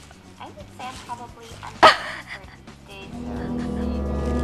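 Plastic carrier bag and paper food wrapper rustling as takeaway food is unpacked, with one sharp crinkle about two seconds in. Background music fades in and grows louder from about three seconds in.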